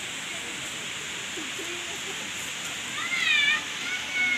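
Steady outdoor hiss with faint distant voices, then about three seconds in a loud, high-pitched wavering cry lasting about half a second.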